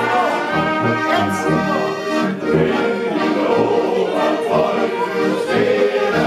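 Bavarian folk band playing live: an accordion carries the tune over brass, with low bass notes keeping the beat.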